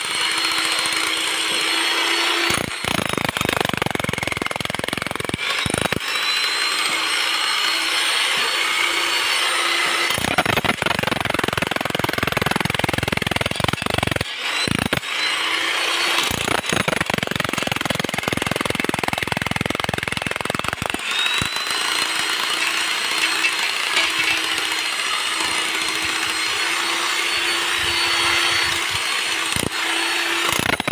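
Electric demolition hammer chiselling into a concrete and brick footing, running without a break. Several times it changes between a steadier, higher whine and a heavier, fuller pounding.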